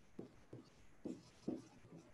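Dry-erase marker writing on a whiteboard: a string of faint, short strokes as the letters are drawn.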